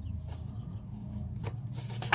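A deck of cards being hand-shuffled, the cards rubbing and flicking against each other in soft, irregular strokes over a steady low hum.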